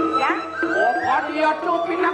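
Balinese gamelan playing dance accompaniment: steady ringing metal tones under a high melodic line that slides up and down in pitch.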